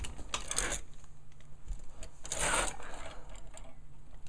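Clothes hangers clicking and sliding along a closet rail as hanging clothes are pushed aside, with fabric rustling. Two bursts, about half a second in and a louder one about two and a half seconds in.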